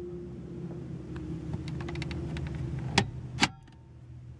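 Plastic lid of a car's upper dashboard glove box (the 2012 VW Beetle's 'Beetle box') being shut: two sharp clicks about half a second apart, about three seconds in, as it closes and latches. A steady low hum runs underneath until then.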